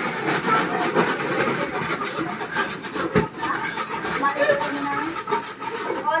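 Busy kitchen chatter of several people talking over one another, mixed with rapid scraping and clicking of metal bowls and utensils being worked at the counter, with one sharper knock about three seconds in.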